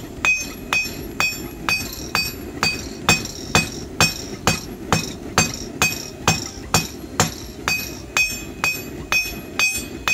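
Hand hammer striking red-hot rebar on a steel anvil, about two blows a second in a steady rhythm, each blow ringing. The blows are drawing out a tang on the end of the rebar.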